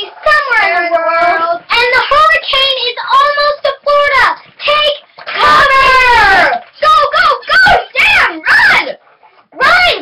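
Young girls' voices singing and exclaiming in drawn-out, gliding phrases, with a loud falling cry about halfway through and a brief pause near the end.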